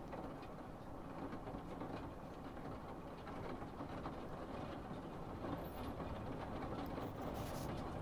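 Faint steady outdoor ambience of a town in the rain: an even low rumble and hiss with no distinct events, growing slightly louder toward the end.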